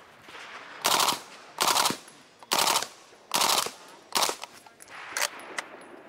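Suppressed PTR CT5, a 9×19mm roller-delayed blowback carbine with a titanium VENT suppressor, firing about six short full-auto bursts in quick succession; the last two are briefer. Each burst is a fast run of muffled shots, quiet and like a staple gun.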